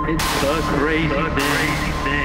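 Electronic music played live on synthesizers and drum machines: a steady looping beat under a wavering, pitch-bending synth line, with a burst of hissy noise lasting about a second just after the start.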